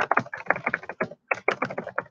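Rapid typing on a computer keyboard: a quick run of keystrokes with a brief pause about a second in.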